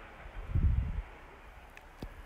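A brief low rumble of wind buffeting the microphone, lasting about half a second starting about half a second in, over a faint steady outdoor background.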